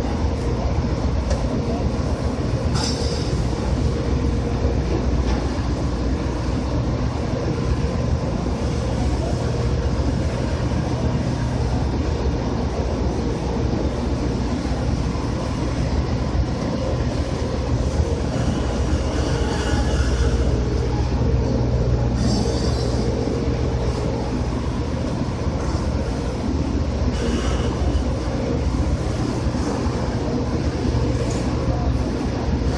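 Steady, loud machinery drone from a cargo ship as its crane lowers a hook, with a steady hum and brief high squeals four times.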